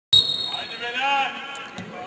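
A football being kicked on an outdoor pitch, with a spectator's shout about a second in. A sharp, loud knock right at the start is the loudest sound, and a low thud near the end.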